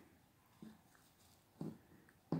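Near silence: room tone, with two faint brief sounds, one a little past halfway and one shortly before the end.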